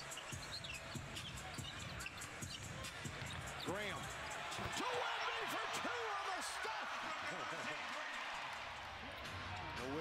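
Basketball game broadcast sound: a ball dribbled on the hardwood court and sneakers squeaking, over arena crowd noise that swells a little about halfway through.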